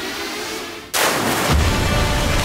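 A dramatic soundtrack effect. The music dips, then about a second in a sudden loud crash cuts in, followed by a heavy low rumble with music underneath.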